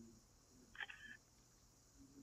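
Near silence, broken by one faint short beep-like tone about a second in.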